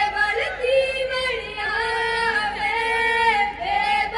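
Women's voices singing a Punjabi jaggo folk song in long, high held notes, phrase after phrase, with no drum.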